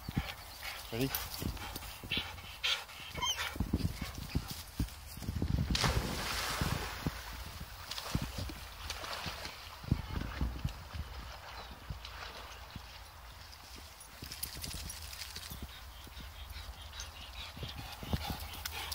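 A springer spaniel splashing into a stream and swimming after a thrown ball, with a louder burst of splashing about six seconds in. Over it come scattered footsteps and rustling through grass, and a low rumble of wind on the microphone.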